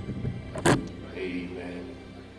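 A handheld microphone being picked up and handled: one sharp knock about two-thirds of a second in, over faint held notes of background music.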